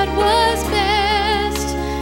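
A woman singing a slow song solo into a microphone, with vibrato on a held note, over instrumental accompaniment with steady bass notes.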